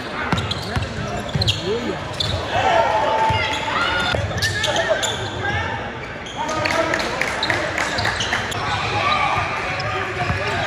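Live sound of a basketball game in a large gym: a ball bouncing on the hardwood court amid players' and spectators' shouts and chatter, all echoing around the hall.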